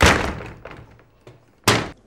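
A wooden door with a wrought-iron grille slammed shut: a loud bang that rings out briefly, a few small rattles, then a second sharp bang near the end.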